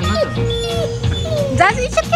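A dog whimpering: short, high whines that rise and fall in pitch, strongest near the end, over background guitar music.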